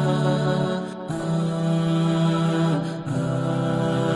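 Vocals-only background nasheed: long held sung notes in close harmony, changing pitch about once a second.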